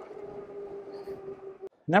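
Electric bike's rear hub motor whining at one steady pitch under pedal assist, over a faint rush of tyre and wind noise. The sound cuts off suddenly near the end.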